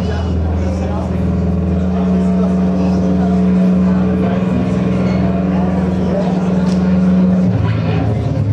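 Loud live rock band: a distorted electric instrument holds long low notes, with a voice at the microphone over it. The low notes change pitch near the end.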